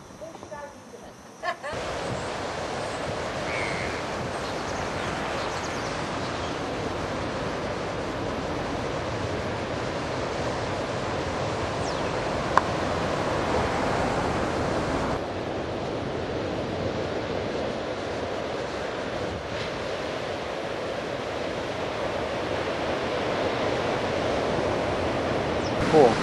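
Steady rush of sea surf breaking on a rocky shore, starting abruptly a couple of seconds in after a quiet moment.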